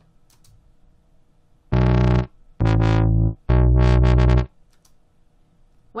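Soundation's Wub Machine software synth playing back three recorded MIDI notes, one after another and each a little longer than the last, with its LFO speed automated.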